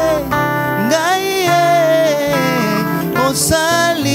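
A male vocalist singing a worship song, holding long notes that slide up and down in pitch, over a Yamaha Motif XS8 keyboard and band accompaniment.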